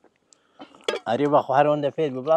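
A drinking glass set down on a metal serving tray with a clink, then a man's wordless voice.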